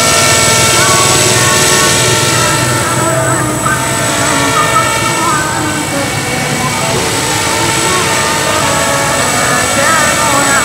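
Electric RC helicopter in an MD500 scale body, built on an HK450 (450-size) mechanics, flying: a steady high motor and gear whine with rotor noise and no change in pitch.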